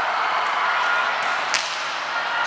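One sharp smack of a hand striking a volleyball about one and a half seconds in, as a serve or pass is played. Under it is the steady murmur of a gym.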